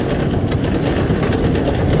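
Velomobile rolling on asphalt: steady, loud road and drivetrain noise carried through its enclosed body shell.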